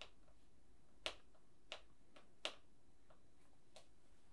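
Several small, sharp clicks at irregular intervals over near silence, the loudest about a second in and again about two and a half seconds in.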